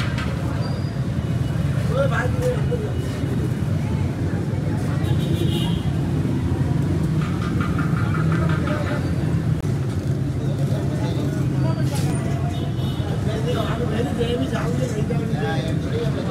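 Busy street noise: a steady low rumble of traffic with indistinct voices talking in the background and a few brief clicks.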